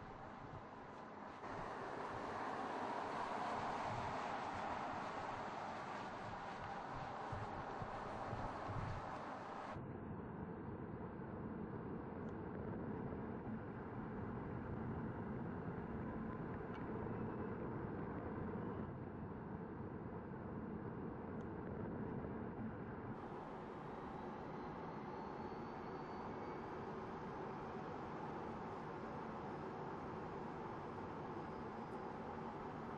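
Mercedes-Benz SLS AMG E-Cell electric sports car on the move: steady road and wind noise, changing abruptly in character three times. A faint rising whine comes about three-quarters of the way through.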